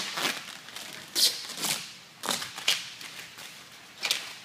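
Vinyl wrap offcuts crinkling as they are handled, in a few short rustles.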